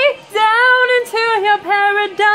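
A young woman singing a pop song in short sustained notes, several phrases with brief breaths between, her pitch dipping and bending slightly within each note.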